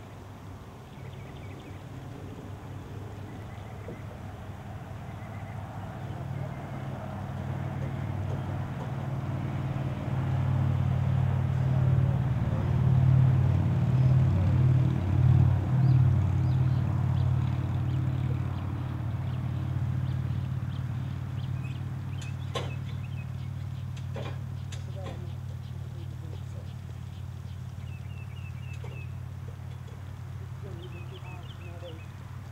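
A low, engine-like drone that builds over about twelve seconds, peaks, and slowly fades away. A few sharp knocks come about two-thirds of the way through.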